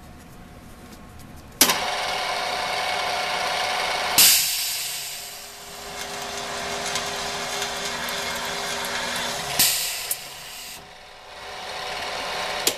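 AutoDrill 5260 self-feeding drilling machine with a two-spindle head drilling two quarter-inch holes in an aluminum bar. It starts suddenly about one and a half seconds in and runs with a steady whine. There is a sharp burst about four seconds in, steady drilling after it, another burst near ten seconds, and then it winds down.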